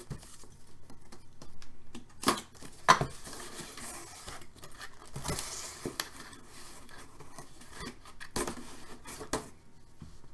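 A white cardboard box being handled and opened: its lid slid off and the cardboard rustled, with a few sharp knocks and taps.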